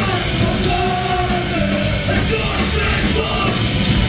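Live punk rock band playing loud, with a singer yelling into the microphone over drums and guitars.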